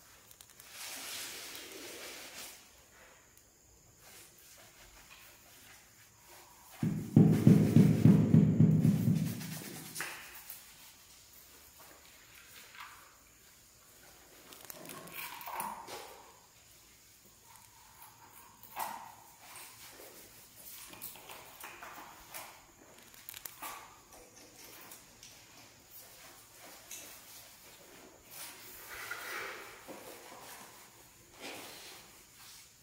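Hand tiling work on a floor: faint scrapes and light taps of a trowel and ceramic tiles being set in mortar. A loud, low, rapidly pulsing rumble lasts about three seconds, starting about seven seconds in.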